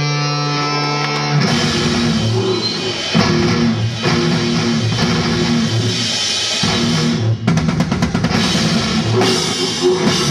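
Live rock band with electric guitars and drum kit. A held guitar chord rings, then about a second and a half in the drums and guitars come in together on a driving riff, with a quick run of drum hits past the middle.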